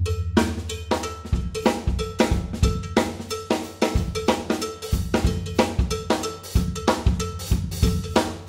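A drummer strikes a red plastic jam block with a stick in a steady, quick pattern of about three strokes a second. Each stroke rings with a bright pitch. Steady low bass notes sound underneath.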